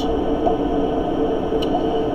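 Steady room tone: an even hiss with a faint constant hum, and no speech.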